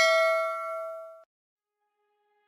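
Bell-like 'ding' sound effect of a notification-bell click, ringing on after the strike and fading, then cut off suddenly just over a second in. Soft music begins faintly near the end.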